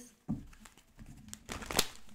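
A deck of tarot cards being shuffled by hand: uneven rustling and light slaps of cards against each other, with a sharper snap near the end.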